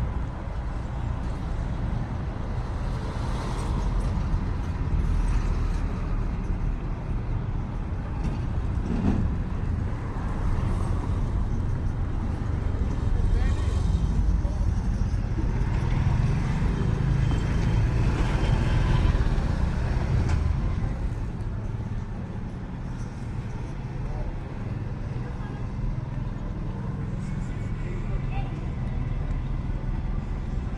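Street ambience of motor traffic running close by, with indistinct voices. It swells louder a few times, most around the middle, as vehicles pass.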